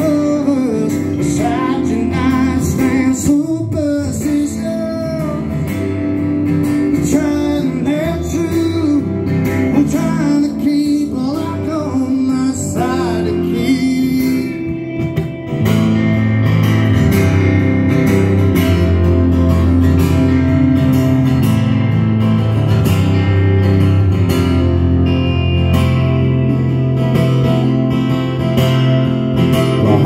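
Live country song: a man singing over strummed acoustic guitars. About halfway through the singing drops out for a louder instrumental passage with a fuller low end, and the voice comes back near the end.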